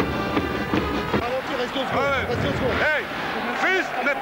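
Background music for about the first second, then arena sound with several voices calling out in short rising-and-falling shouts.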